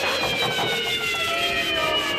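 A slow falling whistle-like sweep, several pitches sliding down together, with the music's beat dropped out beneath it.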